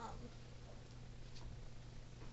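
Faint room tone: a steady low hum under a light hiss, with the tail end of a spoken "um" at the very start.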